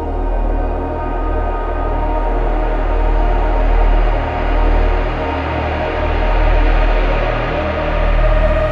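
Ambient intro of an electronic dubstep track: sustained synth pads layered over a low bass drone, swelling and ebbing gently with no beat.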